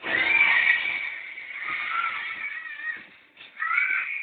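A horse whinnying, a long wavering call that starts suddenly and fades into quieter calls, with music underneath, from a children's television programme playing in the room.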